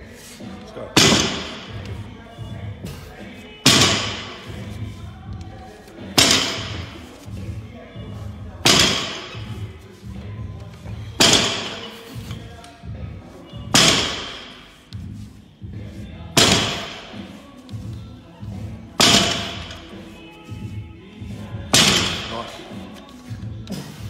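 Barbell with rubber bumper plates thudding down on the lifting platform about every two and a half seconds as deadlift reps touch the floor, nine times in all, over background music.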